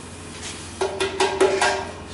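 Sand poured from a metal pan onto the top of a stack of stainless steel test sieves: about a second in, a quick run of sharp metallic taps with a steady ringing tone, lasting about a second.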